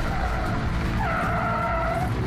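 Car tyres squealing as sedans skid and spin donuts on loose dusty ground: one long squeal, then a second, louder one starting about a second in, over a low rumble.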